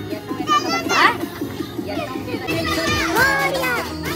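Children's high-pitched voices calling out over music that carries a steady run of repeated notes.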